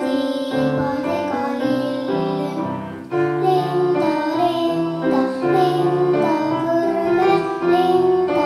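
A young girl sings an Estonian children's song solo into a microphone, accompanied by piano. There is a short break between phrases about three seconds in.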